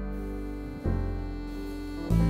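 Jazz band playing live: sustained piano chords over a low bass, with a new chord struck just under a second in.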